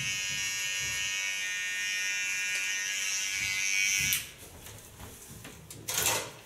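Electric hair clipper buzzing steadily as it trims lines into short hair at the nape, then switched off about four seconds in. A click follows near the end.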